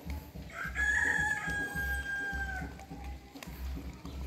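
A rooster crowing once: one long call that rises at the start and is then held for about two seconds, beginning about half a second in.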